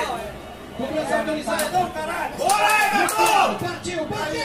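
Several people talking over one another in a group, with a few short sharp clicks in the middle.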